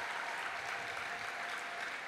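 A large congregation clapping, a steady even applause.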